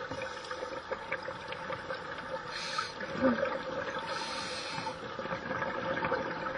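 Scuba divers breathing through regulators underwater: a steady low hum with two bursts of exhaled bubbles, about two and a half seconds in and again around four seconds in.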